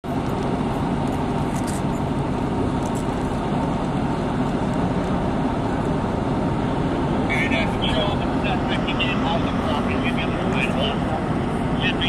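Steady low rumble of vehicle engines and road traffic, with faint voices over it in the second half.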